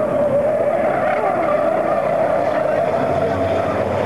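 Racing trucks' diesel engines running hard as the pack goes through a corner, a loud steady engine note that wavers slightly in pitch.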